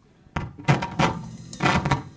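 A few loud drum-kit hits after a brief hush, then a quick cluster of hits near the end, like a short fill.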